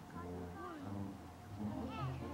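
A toddler's high voice vocalizing, wavering up and down in pitch, over steady low sustained notes.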